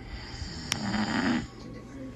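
A sleeping man snoring: one snore about a second and a half long.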